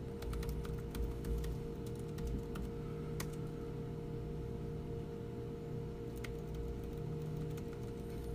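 Computer keyboard typing: scattered, irregular key clicks over a steady low hum.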